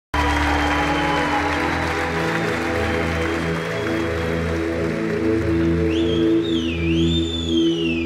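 Opening of a live band's electronic-rock song: a pulsing, repeating low synth-bass pattern, with audience applause that fades out over the first few seconds. About six seconds in, a high wavering tone glides up and down over the pattern.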